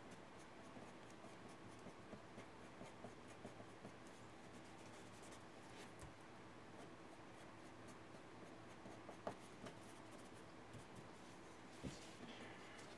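Faint scratching of a graphite pencil on drawing paper as fine detail is drawn in, with small ticks and one slightly louder tick about nine seconds in.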